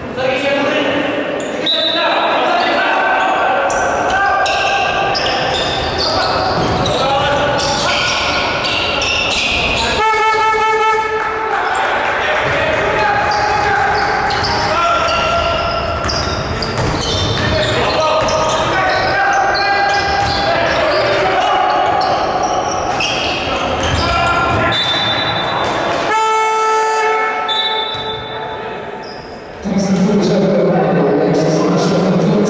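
Live basketball play on a hardwood court in a reverberant sports hall: the ball bouncing, with players' voices and short squeaks. A buzzer or horn sounds twice, about ten seconds in and again near the end.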